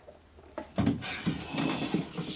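A thump followed by rattling and scraping of plastic as the inner panel of a refrigerator door is handled, with further thumps.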